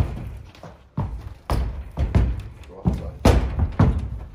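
A horse's hooves thudding on the ramp and floor of a fiberglass Brenderup two-horse trailer as she walks aboard: about seven heavy thumps at an uneven pace, the sharpest right at the start.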